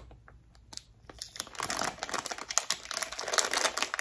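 Cellophane wrap crinkling as it is handled, starting about a second in as a dense, continuous run of fine crackles.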